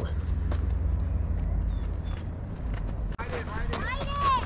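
A steady low rumbling noise, then a sharp click a little after three seconds and people talking briefly near the end.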